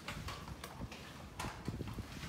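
A series of light, irregular taps, clicks and soft thuds, several a second, like small objects being handled and set down on a desk.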